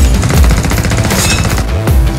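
Action film soundtrack: loud music with a deep bass, mixed with rapid gunfire.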